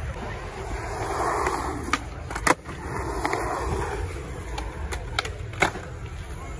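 Skateboard wheels rolling over a concrete bowl, with several sharp clacks of the board striking the concrete, the loudest about two and a half seconds in.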